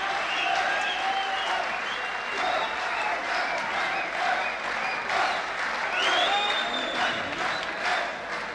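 Live concert audience applauding steadily, with voices calling out over the clapping.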